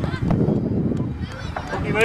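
Shouting voices calling across a football pitch, with short high calls that rise in pitch near the end, over a steady low rumble.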